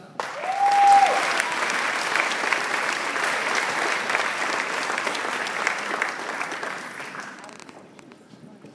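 Audience applauding a graduate whose name has just been called, with one short whoop just after the clapping begins; the applause tails off near the end.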